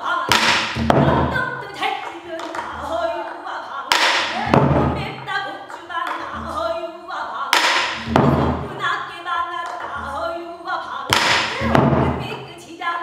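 A female pansori singer singing in a strained, ornamented voice, accompanied by a buk barrel drum. The drum gives a sharp stroke about every three and a half seconds, with low thuds in between.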